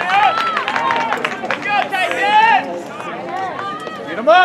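Several high voices shouting and calling out over one another, dense and loud for the first two and a half seconds, then thinning out.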